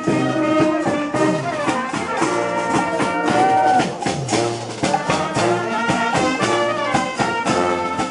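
Brass band playing a lively tune with saxophones, trumpets and a sousaphone, over a steady beat.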